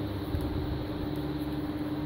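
A steady hum with one constant low tone over a background of noise.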